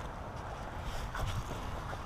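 Low wind rumble on the microphone, with a few faint handling knocks.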